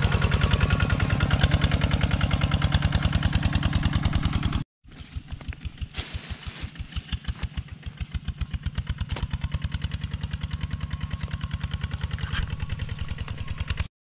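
A walking tractor's single-cylinder engine chugging with a rapid, even beat. About five seconds in the sound cuts out for a moment, and a similar steady chugging carries on, quieter and gradually growing louder toward the end.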